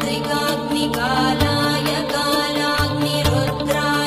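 Devotional music: a mantra chanted to a melody over a steady drone, with regular drum strokes.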